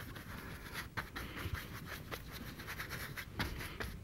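Faint, irregular scratching of a paintbrush's bristles stroking oil paint across a stretched canvas.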